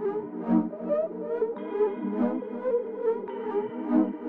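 A two-part synth melody loop playing back with no drums: short plucked synth notes in a simple repeating pattern, over a bell-like counter-melody set back with reverb.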